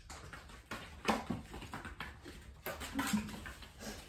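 A dog's paws pattering on a floor mat as it runs around a bucket: a handful of light, irregular taps and knocks.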